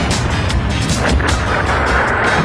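Cartoon sound effects of a stone building collapsing: a continuous rumble with repeated crashes of falling rocks, over background music.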